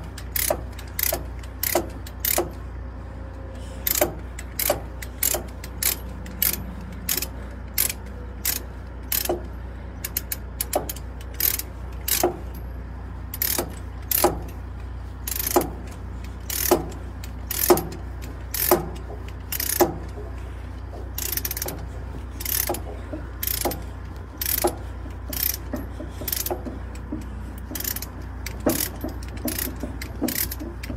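Ratchet chain load binder being worked by hand to tighten a chain: the pawl clicks sharply with each swing of the handle, one or two clicks a second, over a steady low hum.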